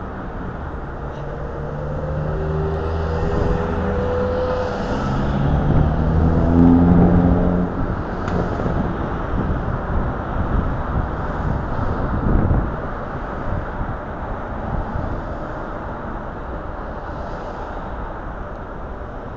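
City street traffic at an intersection: cars drive past, and a vehicle engine hums with its pitch stepping up and down through the first half, loudest about seven seconds in. A brief louder swell of road noise comes near the middle, then a steady traffic hum.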